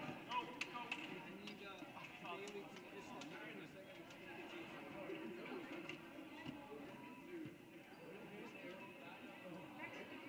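Faint, continuous chatter of many voices in a school gymnasium, with scattered light knocks.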